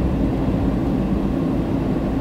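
Steady in-cabin drone of a car driving on an open road: engine and tyre noise heard from inside the car.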